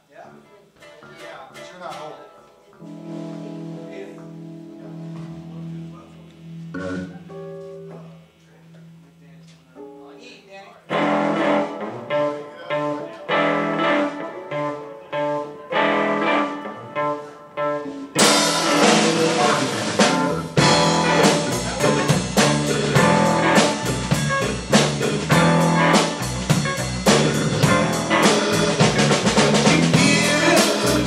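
Live blues band playing: a quiet electric guitar opening of held notes, the band coming in louder about eleven seconds in, then the full band with drum kit at full level from about eighteen seconds in.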